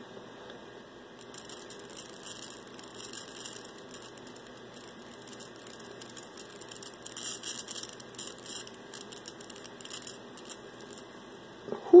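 Small plasma flame on a 16 MHz solid-state Tesla coil crackling and hissing in irregular clusters of fine ticks, over a steady low hum.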